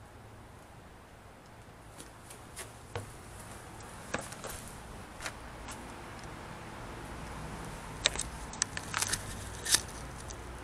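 Scattered light clicks and knocks, a few at first and a quicker cluster near the end, over a low steady rumble: handling noise as the camera is moved around and down beside the van.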